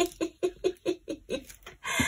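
A woman laughing: a quick, even run of short laugh pulses, about five a second.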